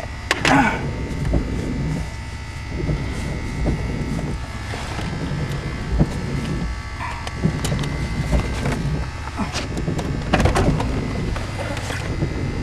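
A car's engine idling, heard from inside the cabin. Over it come rustling and a few scattered knocks and clicks as someone moves about in the seat.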